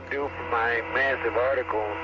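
Thin, narrow-band voice over a radio link: astronaut air-to-ground communication during a Space Shuttle spacewalk.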